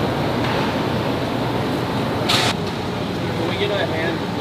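Steady background hum of a large building with faint voices, broken by a short rasping noise about two seconds in.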